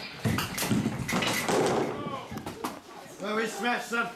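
A rapid series of knocks and thuds over the first three seconds, then a voice about three seconds in.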